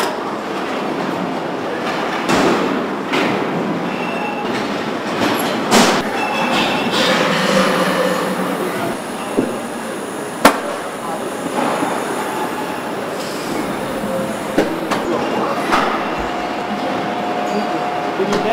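Car assembly-line factory noise: a steady machinery hum and hiss with scattered metallic clicks and clanks, one sharp click about halfway through.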